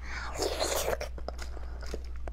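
Close-miked wet eating sounds of a mouthful of beef bone marrow. A dense, wet burst comes about half a second in, followed by small, scattered chewing clicks.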